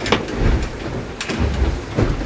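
Rustling and low rumbling thumps from a clip-on microphone rubbing against a sailing jacket as the wearer moves, with a few sharp clicks.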